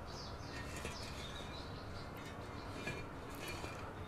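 Quiet room tone with a low steady hum, and faint, short, high chirps of small birds scattered through it.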